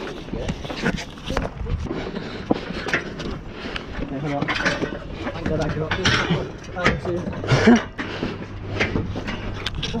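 Indistinct voices close to a body-worn camera, mixed with scattered footsteps, clothing rustle and knocks as hands grab metal railings.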